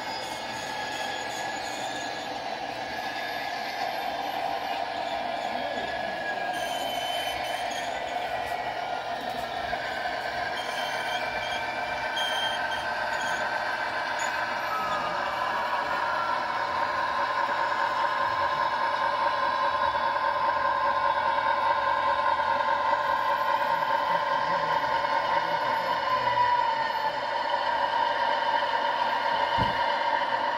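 Model train running along layout track behind two model Amtrak P42 diesel locomotives: a steady mechanical hum with whining tones from the motors and wheels, slowly growing louder as the locomotives draw nearer.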